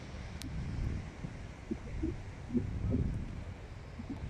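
Storm wind buffeting the microphone, a low gusty rumble that swells and fades, over the faint hiss of distant breaking surf. A single sharp click sounds about half a second in.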